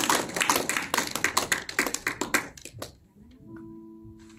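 A congregation clapping, many hands in a quick patter, dying away about three seconds in. Then a soft, steady held note comes in, from an electronic keyboard.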